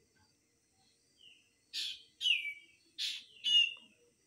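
A bird calling four times in two pairs, starting about halfway in; each pair is a short sharp call followed by a note that falls in pitch.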